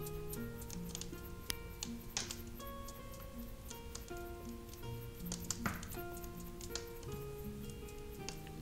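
Soft tavern-style background music runs throughout, over scattered light clicks and taps from a small glass jar of powder being shaken and turned by hand, with a couple of stronger taps about two and six seconds in.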